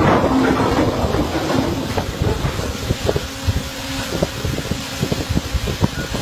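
Ship's anchor chain running away over the windlass and out through the hawse after breaking loose during anchoring: a continuous rumbling clatter of heavy steel links with irregular knocks, loudest at first, easing in the middle and with sharper knocks again near the end.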